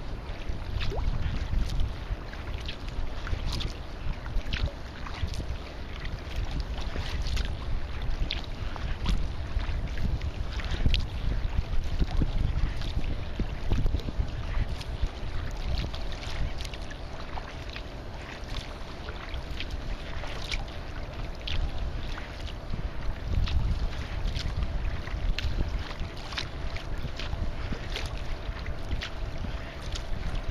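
Wind buffeting the microphone in a constant low rumble, with many irregular small splashes and slaps of choppy water against a kayak's bow as it is paddled. A faint steady hum comes in about halfway through.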